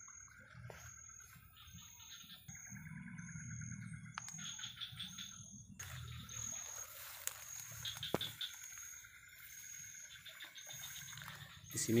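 Insects and frogs of a tropical forest at dusk: a high short chirp repeating about every three-quarters of a second, with several faster pulsing trills coming and going beneath it. A few sharp clicks and a low rustle come from walking through the undergrowth.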